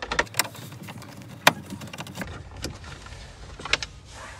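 Screwdriver turning out a self-tapping screw from the plastic centre-console trim: a series of sharp, separate clicks and ticks of metal on plastic, the loudest about one and a half seconds in.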